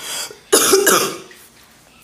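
A woman coughing: one harsh cough about half a second in, which fades within a second.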